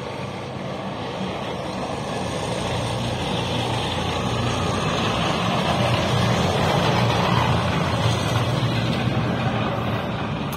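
A motor vehicle driving past close by, its low engine hum and road noise growing louder as it approaches and loudest around seven seconds in.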